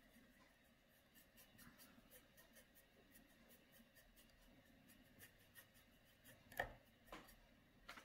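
Faint quick strokes of a paintbrush on a canvas board, a few a second, with one louder knock late on.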